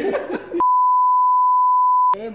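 Broadcast test-tone beep: one steady, pure pitch, the standard reference tone played over television colour bars. It starts sharply about half a second in and holds at an even level to a sudden cut-off.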